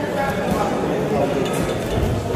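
Background murmur of spectators' voices in a hall around a boxing ring, with one short sharp click about a second and a half in.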